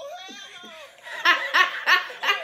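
A woman laughing hard: a high, drawn-out voiced squeal that slides down, then about a second in, loud rhythmic peals of laughter, about three a second.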